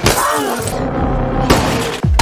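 Glass shattering in a fight scene: a crash at the start and a second smash about a second and a half in, over a tense film score.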